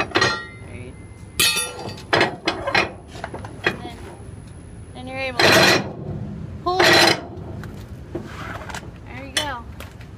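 Trailer strap winch being let off with a steel winch bar: scattered metal clicks and knocks from the winch's ratchet teeth and pawl as the strap is loosened a tooth at a time. Then two loud, ringing metal clangs about halfway through, as the freed strap and its hardware are pulled loose.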